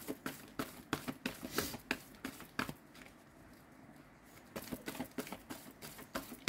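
A deck of tarot cards being shuffled by hand, a quick irregular run of card clicks and flicks. The clicks pause briefly a little after three seconds in, then start again.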